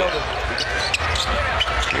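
A basketball dribbled on a hardwood court, with short sharp bounces over the steady background noise of an arena.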